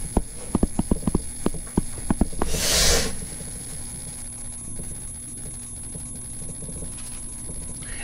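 Quick, irregular taps of a stylus on a touchscreen while handwriting, for about two and a half seconds, followed by a short hiss and then a low, steady room hum.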